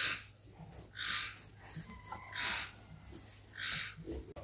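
A sow breathing hard through her nose while restrained for artificial insemination. There are four short, rhythmic huffs, each about half a second long and roughly a second and a quarter apart.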